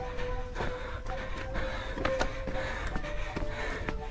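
Quiet background music with a steady held note, over faint ambience with a few scattered clicks.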